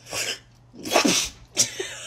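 A woman's mouth-made sound-effect attempt: three loud, breathy, noisy bursts of voice, the last breaking into laughter.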